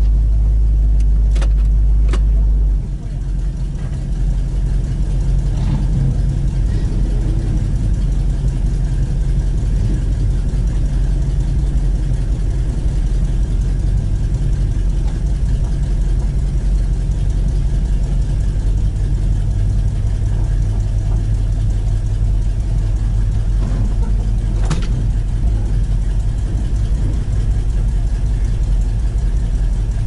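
A 1967 Chevy II Nova's engine running at low speed as the car creeps along, heard from inside the cabin. The level dips briefly about three seconds in, and a few sharp clicks come early and again near the end.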